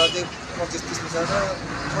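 Men talking, with road traffic running steadily in the background.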